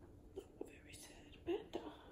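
A woman's quiet, breathy voice sounds: several short whispered bursts, the loudest about a second and a half in.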